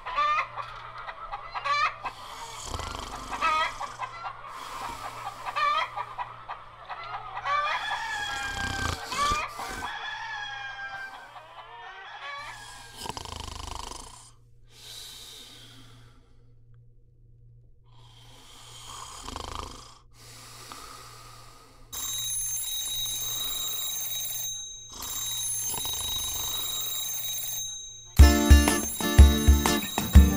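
Hens clucking with a rooster crowing, the loudest calls at about eight to eleven seconds in. Later an alarm clock rings in two long stretches, and near the end a band starts playing: acoustic guitar, bass guitar and cajon.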